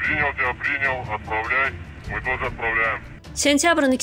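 Speech only: a man talking in a thin, muffled voice with no high end, as heard over a radio, then a clearer narrating voice begins near the end.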